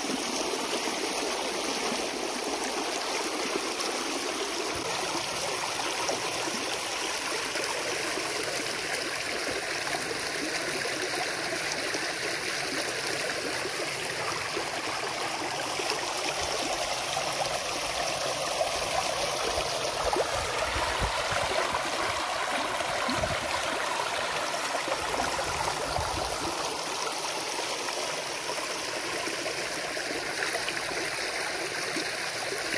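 Stream water rushing steadily through a freshly breached peat beaver dam.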